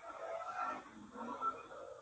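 A domestic cat meowing, two meows one after the other.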